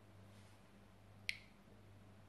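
Near silence with a low steady hum, broken once by a single sharp click a little past the middle.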